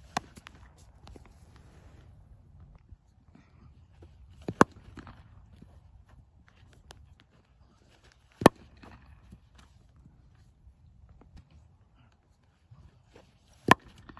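Cricket bat striking the ball, four sharp wooden knocks roughly four seconds apart, the middle two the loudest.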